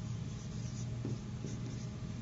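Marker pen writing on a whiteboard: faint scratchy strokes over a steady low hum.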